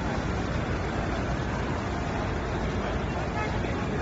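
Steady outdoor noise of a large crowd walking in a street: an even rumble of traffic and movement with indistinct voices and no clear words.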